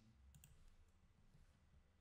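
Near silence with low room hum and a few faint computer mouse clicks about a third of a second in.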